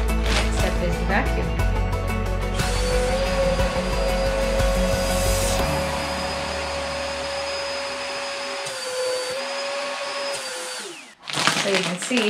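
Vacuum cleaner sucking the air out of a vacuum storage bag of clothes through the bag's valve. It starts a few seconds in and runs steadily, its pitch dips briefly near the end, then it switches off and winds down.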